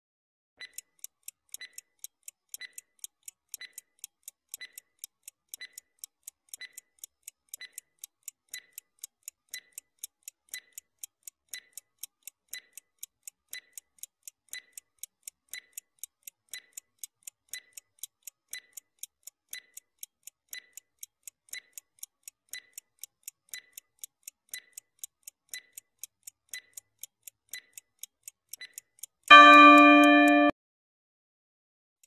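Clock-ticking sound effect timing a quiz question: steady, even ticks, a stronger one about once a second. Just before the end a loud pitched chime sounds as the 30-second timer runs out.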